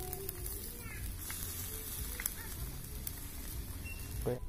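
Skewered meatballs grilling over a charcoal fire: a faint crackle over a steady hiss, with a few small scattered pops.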